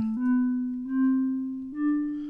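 Orphion iPad app playing three single notes from its harmonic minor palette, each with a soft, piano-like attack that fades, stepping up in pitch.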